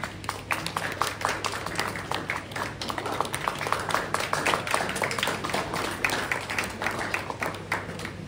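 Audience applause: many hands clapping quickly and unevenly, starting all at once.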